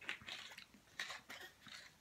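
Faint crackles and clicks of a thin plastic water bottle being handled, its cap being twisted on, in several short bursts.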